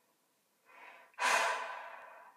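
A person breathing close to the microphone: a faint breath about a second in, then a loud breath that starts suddenly and fades away.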